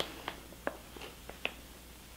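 Faint crinkles and small ticks from a stiff plastic packaging pouch being handled, about five short separate sounds.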